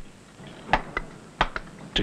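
Steel hammer striking a steel point (punch) held against stone, a steady series of sharp blows about one every two-thirds of a second, dressing the surface down after the pitching tool.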